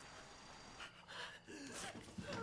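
A woman's ragged, distressed gasping breaths, faint at first and growing louder in the second half, ending with a short strained voiced gasp.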